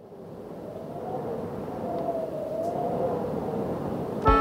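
A rushing noise with a wavering, whistle-like tone fades in from silence and swells steadily louder.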